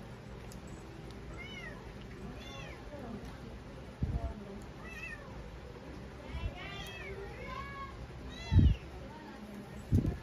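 A cat meowing about half a dozen times, short rising-and-falling calls spaced through the quiet, with a few low thumps, the loudest near the end.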